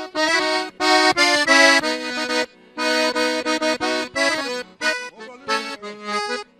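Accordion playing short chordal phrases with brief pauses between them: the gaita introduction to a gaúcho trova, before the singer comes in.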